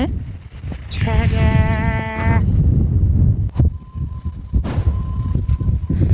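Strong wind buffeting the microphone, a low rumble throughout, with a drawn-out wavering hummed voice about a second in that lasts just over a second. A single sharp click comes a little past halfway.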